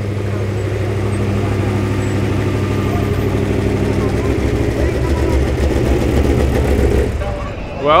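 Trophy Truck's race V8 idling as the truck creeps along at walking pace, a steady low hum that gets louder and more uneven in the second half, then dies away about seven seconds in.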